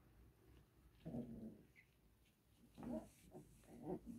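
25-day-old puppies making short vocal sounds as they play, in brief bursts: one about a second in and a few close together near the end.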